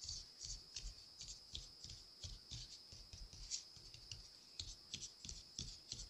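Gloved fingers tapping lightly and repeatedly around a silicone bathtub mold full of freshly poured resin, to release air bubbles trapped along its edges. The taps are faint, quick and irregular.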